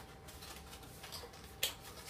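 White paperboard takeaway box handled in the hands, with one sharp snap about one and a half seconds in and a fainter tick just before it.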